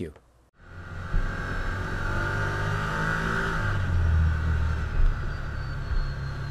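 Side-by-side UTV engine running as the machine drives along a gravel trail, heard from inside the cab: a steady drone that starts about half a second in, its pitch shifting a little up and down with the throttle.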